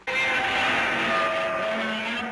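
Godzilla's roar played as a sound effect: one long, harsh roar that starts abruptly and holds a steady level throughout.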